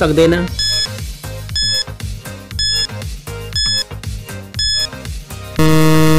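Countdown-timer sound effect: five short electronic beeps, about one a second, over a backing beat, then a longer, louder buzz near the end as the timer runs out.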